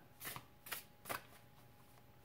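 A fairy tarot deck being shuffled by hand: a few faint, brief card flicks in the first second or so.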